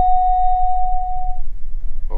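A click followed by a single steady electronic beep lasting about a second and a half, an avionics tone in the headset audio. It sits over the steady low drone of the Beechcraft Baron G58's engines at taxi.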